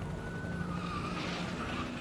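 Sound effects of a convoy of cars driving fast: a steady engine rumble.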